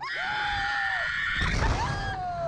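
Two riders screaming and laughing as a slingshot (reverse-bungee) ride launches them upward, in long held cries that sag in pitch as they end. Wind rumbles on the ride-mounted microphone, growing from about half a second in.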